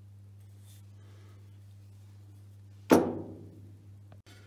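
Steady low hum, then about three seconds in a single sharp metal-on-metal clank that rings and dies away over about a second, as of a heavy cast-iron part set down on metal.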